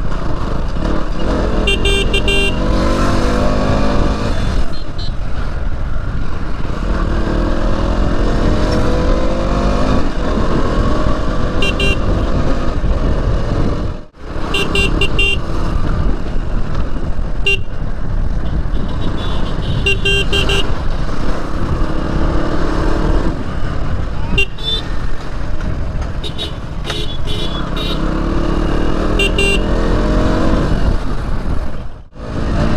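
Motorcycle engine revving up through the gears again and again while riding at speed, with wind and road noise on the microphone. Short vehicle-horn beeps sound every few seconds in the traffic.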